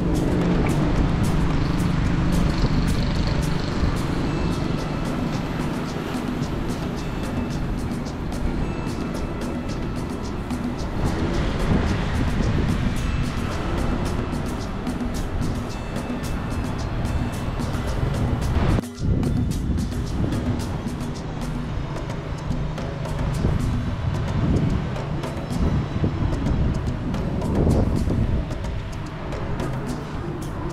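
Background music with sustained low notes, dropping out for a moment about two-thirds of the way through.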